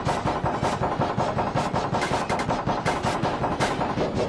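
Chopped, stuttering remix of logo audio: layered logo sound clips cut into a rapid, continuous train of short sharp hits, many per second.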